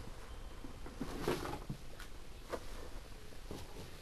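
Rustling and scattered soft knocks of plush toys and objects being handled and moved about close to a handheld camera, the loudest cluster a little after a second in.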